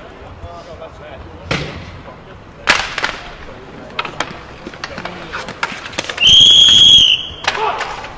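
Hockey sticks clacking and hitting a ball on a concrete rink in scattered sharp knocks, then a referee's whistle blown once, a steady shrill blast of about a second near the end and the loudest sound here.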